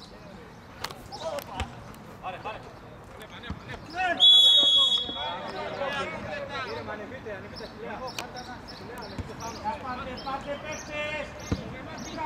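A referee's whistle blown once about four seconds in, a single high blast of about a second, over players' shouts. A football is kicked with a few sharp thuds.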